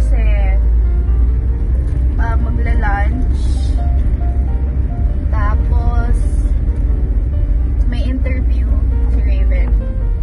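Steady low rumble inside a moving car's cabin, with a woman's voice and music over it.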